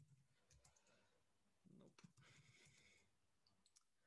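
Very faint computer keyboard typing: a few scattered key clicks over near silence as terminal commands are entered.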